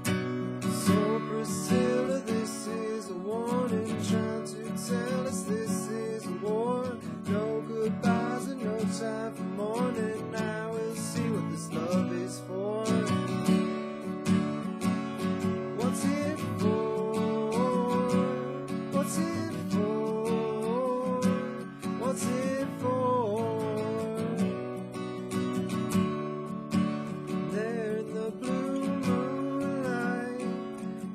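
Steel-string acoustic guitar with a capo, strummed in steady chords as a song accompaniment. A wavering melodic line rides above the chords.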